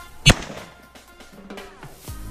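A single loud shotgun shot about a quarter second in, sharp and brief with a short ring after it, over background music.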